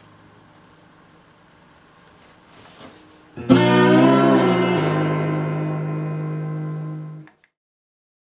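Homemade license plate slide guitar: a chord is struck about three and a half seconds in, its pitch shifts about a second later under the slide, and it rings until it cuts off abruptly near the end. Before the chord there is only faint low ringing.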